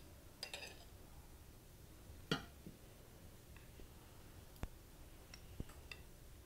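A few faint clicks and taps of a spoon against a glass mixing bowl as soft mashed squash mixture is scraped out into a glass baking dish. The loudest tap comes a little over two seconds in.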